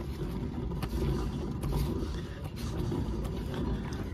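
Rear wheel of a Maruti Suzuki Alto 800 spun by hand off the ground, a steady low rumble from the turning tyre and hub bearing, as a check for wheel-bearing noise.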